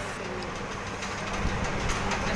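Restaurant background noise: a steady low hum with a few faint clicks, the sharpest near the end.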